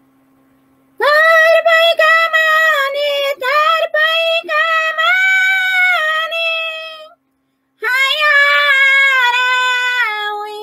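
A woman singing a yaraví a cappella in a high, sustained voice: a long phrase begins about a second in, breaks off briefly, and a second phrase follows that drops lower as it ends.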